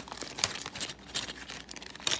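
Clear plastic zip bag crinkling in the hand in irregular crackles as a small parts order is opened.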